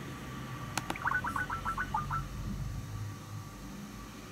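A couple of clicks, then a quick run of about eight short electronic beeps lasting about a second: the Skype app's sound as an outgoing call is placed.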